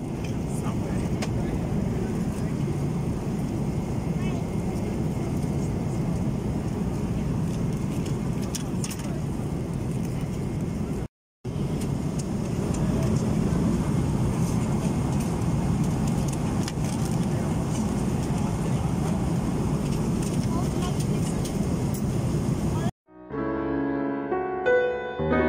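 Steady low rumble of an airliner cabin in flight, the engine and airflow noise, with a few faint clicks. It drops out briefly about eleven seconds in, and piano music starts just before the end.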